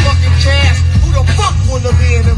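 Hip hop music with rapping and heavy bass playing very loudly over a taxi's car stereo, heard from inside the cabin.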